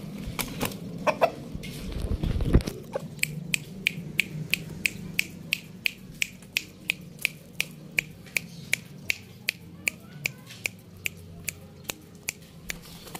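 A Shamo rooster clucks briefly near the start, with a heavy thump about two and a half seconds in. From about three seconds in, a steady run of sharp clicks, about three a second, goes on over a low hum.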